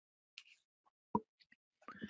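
Near silence, broken by one short soft plop about a second in and a few faint clicks.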